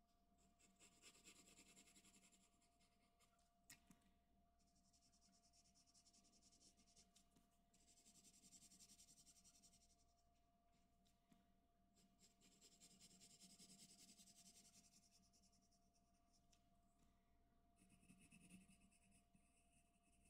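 Faint scratching of a graphite pencil shading on paper, in passes of two to three seconds with short pauses between them, and a single sharp tick about four seconds in.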